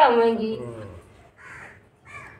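A woman's voice trails off, then a crow gives one short, harsh caw about a second and a half in.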